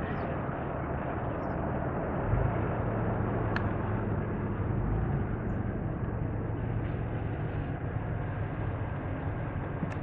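Car interior noise while driving: steady engine and road rumble heard from inside the cabin. A low hum strengthens a couple of seconds in, and there is a single faint click about a third of the way through.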